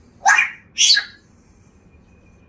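African grey parrot giving two short, harsh calls about half a second apart in the first second.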